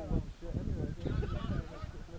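Wind rumbling on the microphone, with a short run of distant high-pitched calls about a second in.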